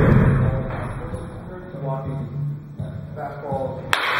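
A baseball bat strikes a pitched ball with a single sharp crack near the end, echoing in the cage. A heavy thud sounds right at the start, with low voices in between.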